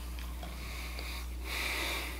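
Quiet room tone with a steady low hum, and a faint breath or sniff near the end.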